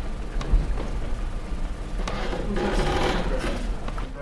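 Handling noise from a hand-held microphone being passed to an audience member: a low rumble with scattered knocks and clicks, and a louder rustle about two seconds in.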